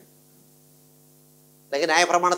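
Steady electrical hum made of several low, even tones, heard on its own in a pause of a man's speech. His voice trails off at the start and comes back near the end.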